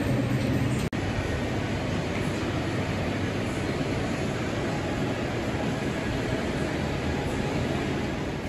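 Steady, even rumbling ambience of a supermarket aisle lined with open refrigerated display cases, their cooling fans and the store ventilation running. The sound breaks off for an instant about a second in.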